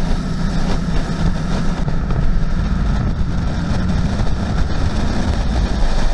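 Mercedes G-Wagon with an OM606 turbodiesel inline-six cruising steadily at highway speed, heard from a camera mounted outside on the bonnet: a loud, even blend of engine drone, tyre noise and wind rushing over the microphone.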